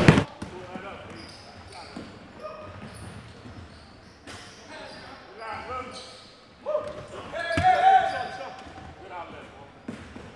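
Indoor gym sounds of a basketball game: a ball bouncing on the court and players' voices, with a louder shout about two-thirds of the way through.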